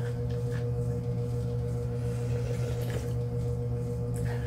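A steady low hum made of a few constant tones, unchanging in pitch and level throughout.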